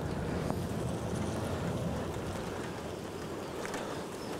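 Honeybees humming around an opened hive, a steady dense hum, with a faint tap or two of the metal hive tool as a frame is levered loose and lifted.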